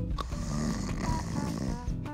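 A snoring sound effect, one long rattly snore, over light background music.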